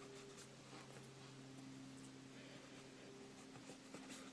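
Faint strokes of a water brush on paper, over a steady low hum.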